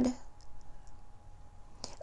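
A pause in a woman's speech: quiet room tone with a few faint small clicks about half a second to a second in.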